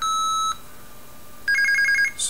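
Homemade Arduino blue box sounding through a small speaker: a short steady beep at the start, then about a second later a quick run of about six pulses alternating between two tones. This is one digit (a 6) sent in IMTS dial-pulse mode, where a second tone fills each break instead of silence.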